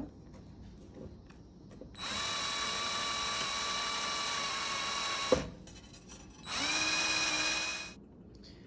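Cordless drill spinning a metal rod to wind wire into a coil, its motor whining steadily in two runs: about three seconds starting two seconds in, then a shorter run of about a second and a half near the end.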